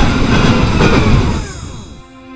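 Sound effect of a train rushing past: a loud rumbling rush that fades away near the end with a falling pitch.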